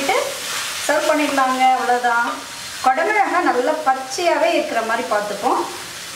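Thick curry sizzling in an iron kadai as a wooden spatula stirs it, with a person talking over it in two stretches.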